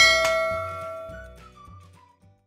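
Chime sound effect of a subscribe-button notification bell: one bright bell ding that rings and fades away over about two seconds, with a short click about a quarter of a second in. Low background music runs underneath.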